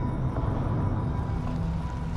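Low steady rumble of a car driving, under a droning music score.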